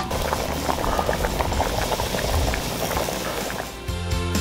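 Thick curry gravy boiling hard in a hammered steel pot, with many small bubbles popping irregularly.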